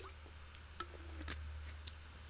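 Low steady electrical hum with a few faint, soft clicks scattered through it and a brief faint tone near the middle.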